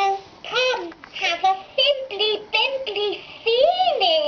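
Electronic plush toy's small speaker playing a high-pitched, childlike sung tune in short sliding-pitch phrases. The song is set off by a press on the toy's foot.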